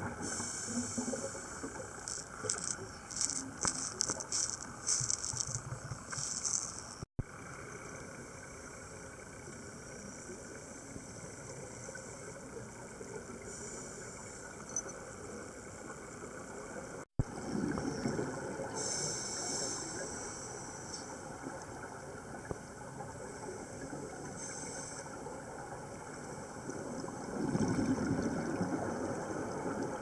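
Underwater ambience of a scuba dive: a diver's regulator breathing, with repeated hissing breaths and rushing swells of exhaled bubbles. The sound drops out twice for an instant, about 7 and 17 seconds in.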